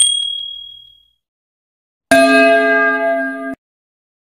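Subscribe-button animation sound effects. A click with a short high ding fading out comes right at the start. About two seconds in, a louder, fuller notification-bell chime holds for about a second and a half, then cuts off suddenly.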